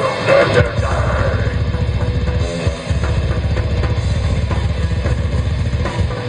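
A death metal band playing live: heavily distorted electric guitars and bass over fast, dense drumming with rapid bass drum, captured by a camcorder's built-in microphone. The low end drops out briefly about two and a half seconds in, then the full band comes back in.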